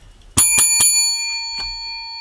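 A small bell struck three quick times, its metallic ring lingering long after the strikes.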